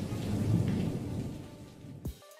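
A low rumble that swells about half a second in and then dies away.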